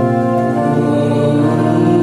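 Church pipe organ playing a hymn in sustained full chords, shifting to a new chord about half a second in.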